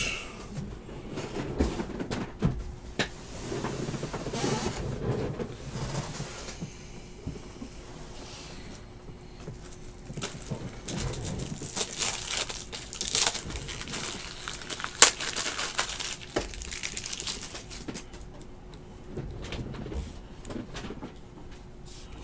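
Handling noise from plastic top loaders and cards: rustling, crinkling and scattered light clicks, busiest a little past halfway. A faint steady hum runs underneath.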